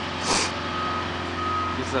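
A truck's reversing alarm beeping: short beeps of one steady mid-pitched tone over a constant low hum. A brief hiss comes just after the start.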